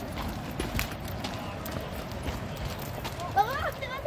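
Footsteps on a dirt and stone trail, a scattering of short scuffs and steps over a steady background rush. A high-pitched voice calls out near the end.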